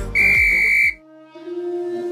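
A single loud, steady electronic timer beep lasting under a second, marking the end of a work interval. The beat music stops with it, and a soft, slower music track with sustained notes begins.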